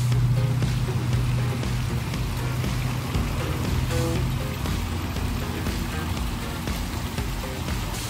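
Background music over the steady splash of a garden pond's small rock waterfalls and bubbling urn fountain.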